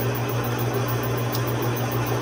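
Metal lathe running with a steady motor hum while its cutting tool turns down the base of a Stihl MS880 chainsaw's aluminium cylinder, taking a light facing cut to lower the cylinder and tighten the squish clearance.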